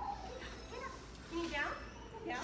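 A young hound mix dog whining, with a high cry that sweeps up and down about one and a half seconds in.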